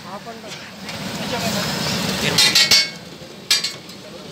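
Metal spatula striking and scraping on a large steel griddle: a quick run of three sharp clanks past the middle and another near the end.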